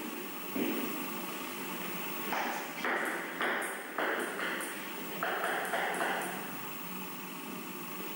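Table tennis ball bouncing between points, against the background noise of the hall.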